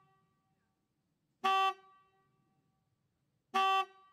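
A horn sounding two short toots about two seconds apart, each about a third of a second long with a brief ringing tail.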